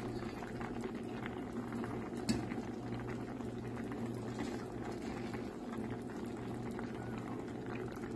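Pot of sour salmon soup boiling steadily, with a continuous bubbling crackle over a low steady hum.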